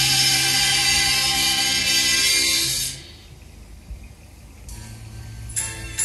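Music playing from a Pioneer RT-1011H reel-to-reel tape deck, stopping about three seconds in. A quieter stretch of faint hiss follows, and the next piece begins near the end.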